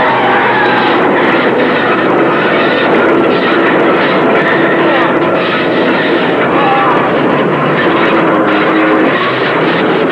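Movie sound effects of a loaded logging truck running hard as it shoves a crushed sedan along the road, with metal and tyres dragging on the asphalt. It is a loud, steady, dense grinding noise.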